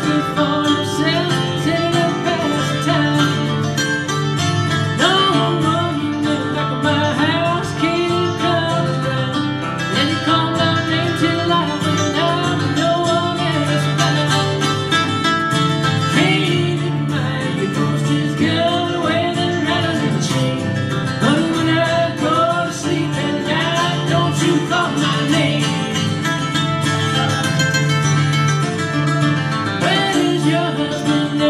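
Live acoustic country duet: two acoustic guitars playing together, a picked lead line over strummed rhythm, with singing.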